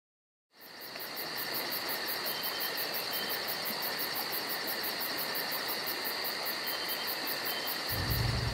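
Insects chirring in woodland: a steady high drone with an even, fast pulsing trill of about four to five pulses a second on top, fading in about half a second in.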